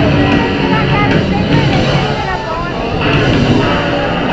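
Loud live garage-punk band: a shouted voice wavering over a wall of distorted electric guitar noise, with the bass droning underneath.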